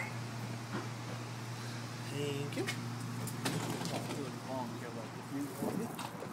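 Steady low hum of a stopped light rail car standing at a station with its doors open, with a few scattered clicks. The hum falls away about five seconds in.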